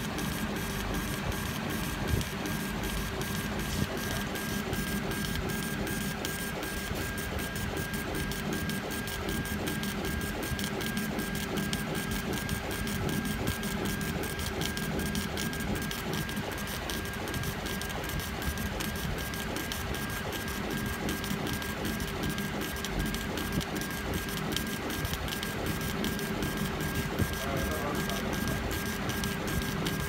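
CO2 laser engraving machine raster-engraving, its head carriage shuttling back and forth in rapid, even strokes like a printer, over a steady whine.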